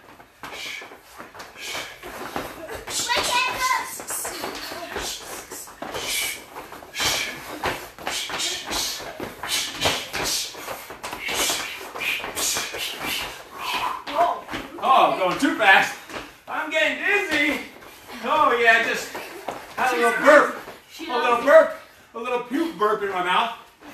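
Repeated slaps and thuds of hands and feet striking a rubber gym floor during a fast bodyweight exercise. Talking takes over in the last third.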